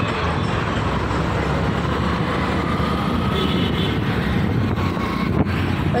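Steady street traffic noise: vehicle engines, among them a tractor and motorbikes, running along the road.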